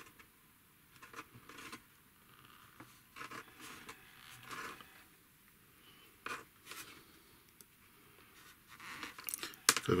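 Plastic tubing being pushed and twisted by hand onto the nozzle of a plastic syringe: faint, irregular rubbing, scraping and small clicks of plastic on plastic, a tight fit.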